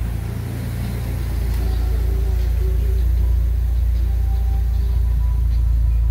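Steady low rumble in a car cabin, with faint music from the dashboard cassette player coming in about a second and a half in.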